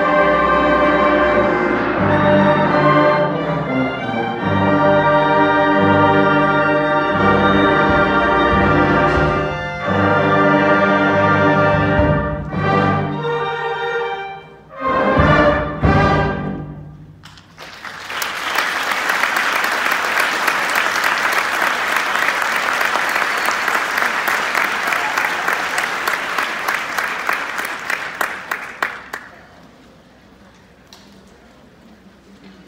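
A high school concert wind band plays sustained full-band chords, then a few short accented chords, and the piece ends about seventeen seconds in. The audience then applauds, the clapping fading out near the end.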